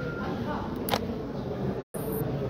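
Murmur of a crowd of people talking in a large hall, with one sharp click about a second in and the sound cutting out for a moment near the end.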